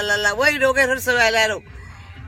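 A woman's high voice drawing out repeated sing-song 'la' syllables, breaking off about a second and a half in.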